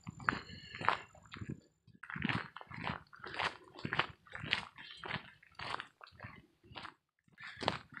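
Footsteps crunching on a dirt-and-gravel trail while walking, about two steps a second.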